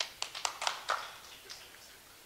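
A few people clapping briefly, a scattering of sharp claps that thins out after about a second.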